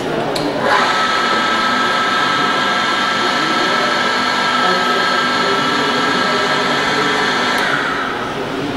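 Small bench drill press for circuit boards switched on with a click, its motor running with a steady high whine. It is switched off near the end.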